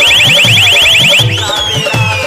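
Loud DJ dance music through a big sound system: a rapid run of short rising alarm-like synth chirps, about a dozen a second, gives way about a second and a quarter in to a long siren-like glide that falls and then slowly rises, over a pulsing bass line.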